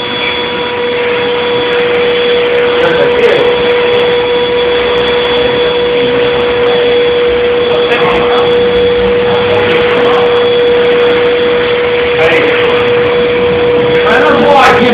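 Handheld power sander running steadily against a car's painted body panel: a constant high hum over a dense grinding hiss.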